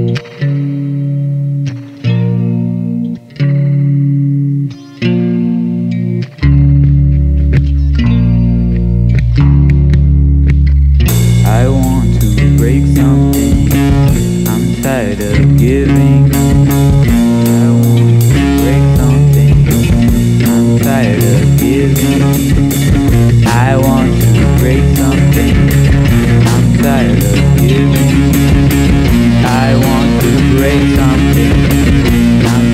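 Instrumental rock: held guitar chords broken by short pauses. A heavy bass comes in about six seconds in, and around eleven seconds the full band enters with distortion and a steady beat.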